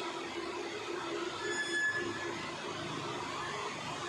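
Steady background hum and hiss, with one short high-pitched tone lasting under a second about a second and a half in.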